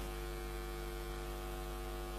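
Steady electrical mains hum, a low buzz with many even overtones that does not change.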